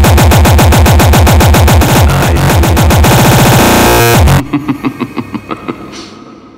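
Frenchcore music with a fast, pounding distorted kick drum under noisy synths. About three and a half seconds in, a quick stuttering roll builds before the kick cuts out, and a quieter breakdown fades down.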